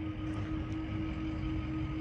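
A steady low electric hum with a fainter higher tone above it, over a low rumble of wind on the microphone, as the electric SUV creeps into the charging stall.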